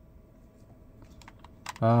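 A few small plastic clicks from a wireless lavalier mic transmitter being handled against its plastic charging case, faint about a second in and sharper just before the end, where a man says a short "uh".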